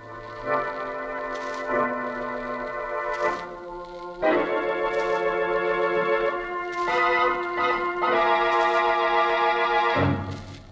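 Organ playing a musical bridge marking a scene change in a radio drama: held chords that shift a few times and swell louder about four seconds in.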